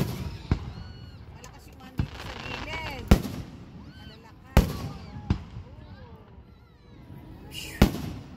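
Aerial firework shells bursting overhead: about seven sharp bangs at uneven intervals over eight seconds.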